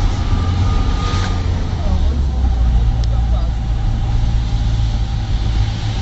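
Vehicle engine and road noise heard from a moving car, a steady low rumble.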